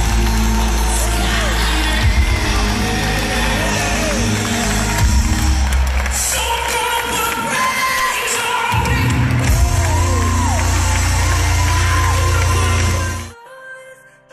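Live gospel praise music over a hall's PA, with heavy bass, singing and a crowd cheering and whooping along. The music cuts off suddenly near the end.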